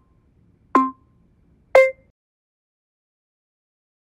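Workout interval timer counting down the end of a set: two short identical electronic beeps a second apart, then a final beep of a different pitch about a second later marking time up.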